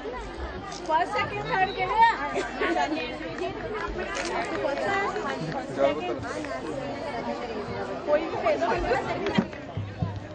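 Chatter of many people talking at once, with several voices overlapping and no single speaker standing out.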